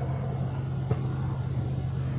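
Steady low hum inside a parked car, one even pitch that holds without change, with a single light click about a second in.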